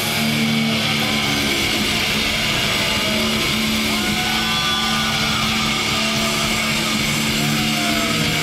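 Electric guitar amplifiers holding a steady low drone at the end of a hardcore punk song, under shouting and noise from a large crowd.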